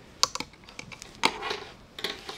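Metal knitting needles clicking together in a quick, irregular run of light clicks as stitches are worked.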